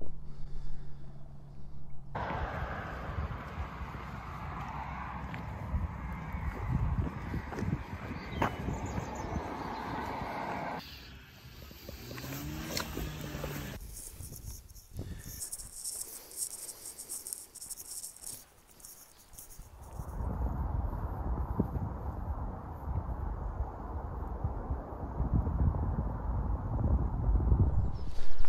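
Wind buffeting the microphone outdoors, heard across several short cut clips, with a short pitched sound that rises and falls about halfway through.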